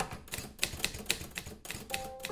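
A fast, irregular run of clicks like typing, about seven a second. Held music notes come in at the very end.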